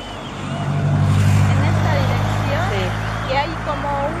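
A motor engine drones low and steady, swelling to its loudest about a second in and then holding.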